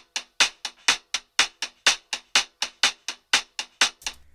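Hi-hat recorded through a contact microphone, played back soloed: a steady pattern of sharp, dry clicks, about five a second, with louder and softer strokes alternating. Pretty gnarly sounding on its own.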